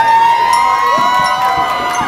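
A live indie rock band playing, with several long held notes sliding slightly in pitch over the instruments.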